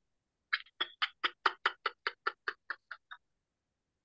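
Whispered laughter: a quick run of about a dozen breathy 'ha' puffs, about five a second, pushing the breath out to the very end, growing fainter over the last few and stopping a little past three seconds in.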